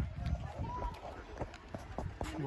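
Footsteps of someone walking on a paved lakeside path, a few low thumps a second, with faint voices of other people in the background.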